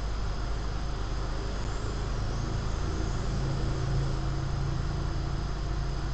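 Steady low background rumble and hum, with no speech. The hum grows a little stronger in the middle.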